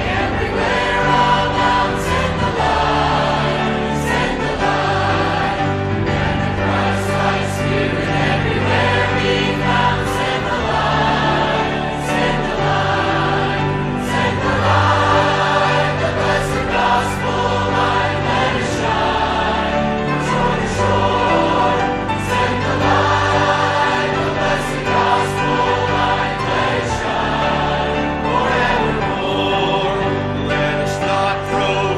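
Choral Christian music: a choir singing over sustained accompaniment, with a steady beat.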